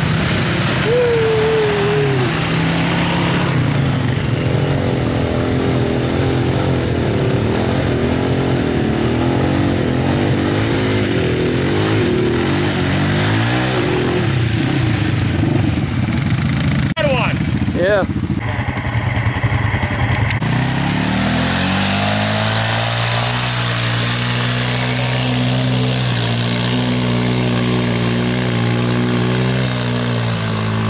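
ATV engine running and revving as it churns through a muddy, water-filled trail, its pitch rising and falling. After a short break past the middle, an engine climbs in pitch and then settles to a steady drone.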